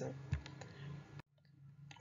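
A few faint clicks and a soft low thump, then a sharper click just over a second in followed by a brief dead silence where the recording is cut, at a slide change in the lecture.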